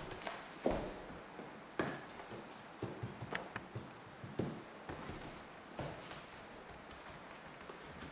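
Handling noise from a person shifting on a canvas laid over a wooden floor: half a dozen scattered soft knocks and taps against a quiet room.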